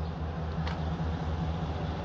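A vehicle engine idling: a steady, low, even hum with a light rushing noise over it.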